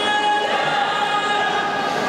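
A group of spectators singing together in the stands, several voices holding long notes over the general crowd noise of a large hall.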